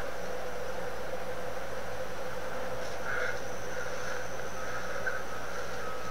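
Insects calling steadily outdoors: a constant, high-pitched drone.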